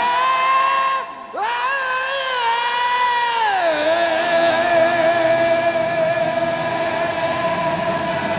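Live rock band holding a long sustained high note. The note breaks off briefly about a second in, comes back at the same pitch, then slides down a step and is held.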